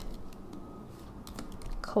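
Typing on a computer keyboard: a few light, scattered keystrokes, most of them in the second half.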